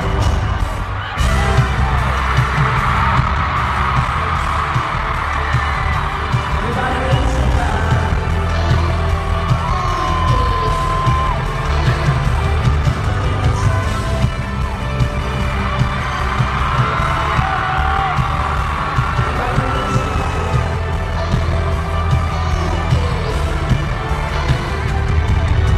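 Live pop music played over an arena sound system and heard from the crowd, dominated by a heavy, pounding bass beat, with a voice gliding in pitch above it.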